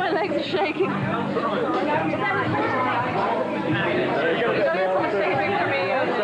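Several people talking over one another in indistinct, overlapping chatter.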